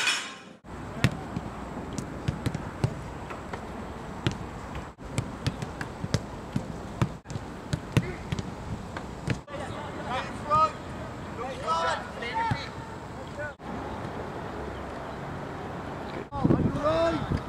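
Soccer balls being kicked and caught: short sharp thuds scattered over a steady outdoor hiss, broken by several brief silent gaps. Distant voices call out from about ten to thirteen seconds in.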